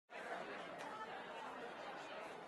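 Faint background chatter of several people's voices.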